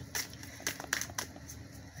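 Deck of oracle cards being shuffled by hand: a run of short, crisp card clicks, mostly in the first half.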